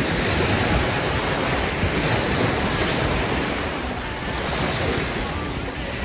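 Small waves breaking and washing up onto a sandy beach, the hiss of the surf swelling every couple of seconds as each wave runs in. A low rumble of wind on the microphone lies under it.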